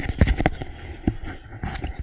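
A run of irregular sharp clicks and knocks, about eight in two seconds, over a low muffled rumble.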